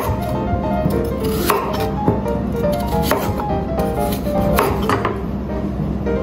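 Chef's knife cutting through raw sweet potato chunks on a wooden cutting board: several separate cuts, each ending in a sharp knock of the blade on the board. Background music plays throughout.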